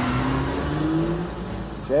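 Car engine accelerating, its pitch rising steadily for just over a second before fading under the traffic rumble.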